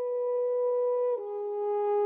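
French horn playing a long held note, then stepping down to a lower held note a little over a second in.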